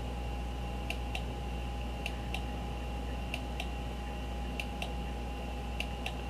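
Computer mouse button clicking about five times, roughly once every 1.3 seconds, each a quick pair of clicks as the button is pressed and released, stepping a video player on frame by frame. A steady hum runs underneath.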